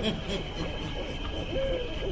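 Many overlapping short hooting calls, each briefly rising and falling in pitch, over a faint steady high ringing tone.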